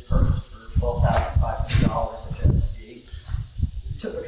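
Speech: a person talking in a meeting, the words not clear.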